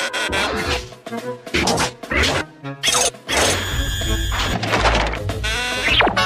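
Cartoon music score with a quick run of short comic sound effects, hits and knocks, and a low rumble a little before the end.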